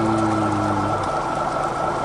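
A man's voice holding one drawn-out syllable at a steady pitch, which stops about a second in, over a steady boat engine and sea noise with a thin constant high tone.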